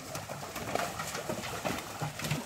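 A dove cooing, with scattered short splashes and knocks from work in shallow water.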